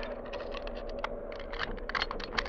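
Radio-drama sound effect of a chain being worked off a man's ankles: an uneven run of small clinks and clicks, sparse at first and busier near the end.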